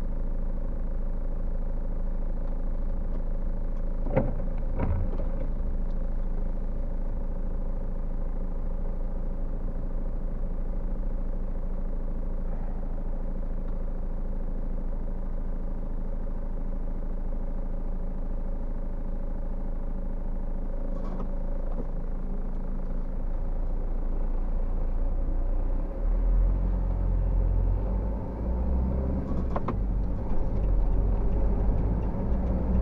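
Car engine idling, a steady low hum heard from inside the cabin, with a few single clicks. Near the end the car pulls away and the low engine and road rumble rises.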